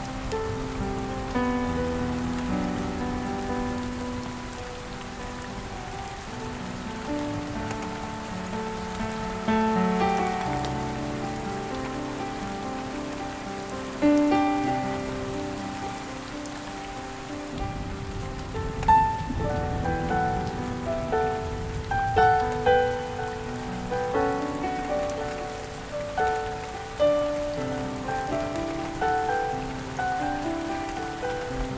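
Soft, slow solo piano music layered over steady falling rain.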